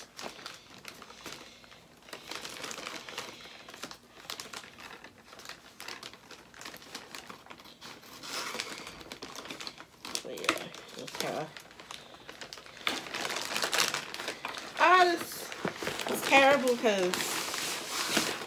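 Plastic poly mailer bag crinkling and rustling as it is torn open and handled, with a cardboard shoebox pulled out of it near the end.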